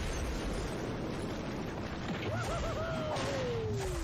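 Explosion sound effect from a pixel-art fight animation: a steady rumble that runs on, then a few short chirps and one tone gliding down in pitch over the last second.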